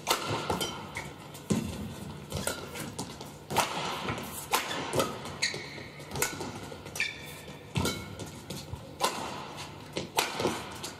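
Badminton rally: rackets striking the shuttlecock and players' feet landing on the court give sharp knocks at an uneven pace, about one every half second to a second. Shoes squeak briefly on the court floor a few times in the second half.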